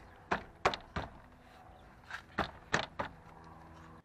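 The door trim panel of a 1985 Toyota Celica Supra being banged into place by hand, its retainer clips seating into the door. About seven sharp knocks: three in the first second, then four more close together about two seconds in.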